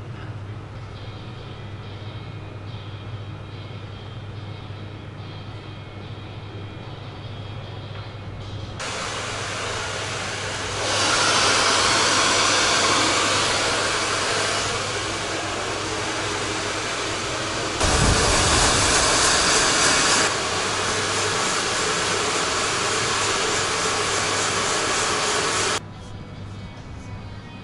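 Handheld hair dryer blowing, starting about a third of the way in and running steadily with its level rising and falling as it is moved. It is loudest for a couple of seconds past the middle, with a low rumble of air hitting the microphone, and cuts off just before the end. Before it comes on there is only a faint steady hum.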